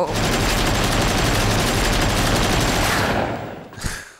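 Long continuous burst of automatic gunfire from a film soundtrack: rapid shots without a break, fading away shortly before the end.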